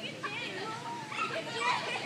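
A group of children chattering and calling out, several young voices overlapping at once.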